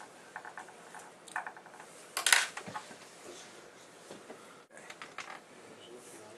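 Light clicks and taps from fly-tying scissors and tools being handled, with one louder, short sharp scrape about two seconds in.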